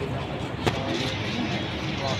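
Steady low rumble of outdoor crowd and traffic noise, with faint voices and one sharp click a little over half a second in.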